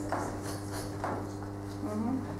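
Chalk scratching on a blackboard in three or four short strokes as numbers are written.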